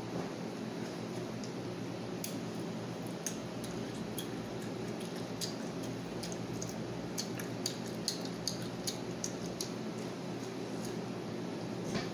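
A child chewing garlic butter shrimp with her mouth close to the microphone, with small wet clicks and smacks scattered through, most of them in the second half. A steady low hum runs underneath.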